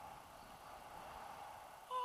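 Steady rush of wind over the camera microphone in flight. Just before the end, a voice starts a held exclamation.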